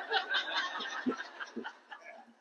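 Scattered chuckling and light laughter from a seated audience, fading out over about a second and a half.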